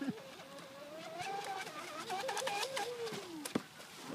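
RC speedboat's motor whining out on the water, its pitch rising over the first second or so, wavering, then falling near the end as the boat runs across the pond. Short clicks in the middle and one sharp click near the end.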